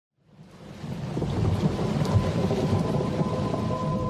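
A low rumbling, crackling noise fades in over the first second or so and then stays steady. From about two seconds in, a single held note of the song's instrumental introduction comes in over it.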